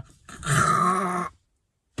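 A man's drawn-out raspy growl lasting about a second, held at a steady pitch, that cuts off abruptly into silence.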